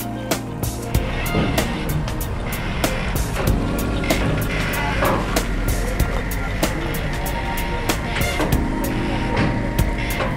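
Background music with a steady beat over a low, steady rumble.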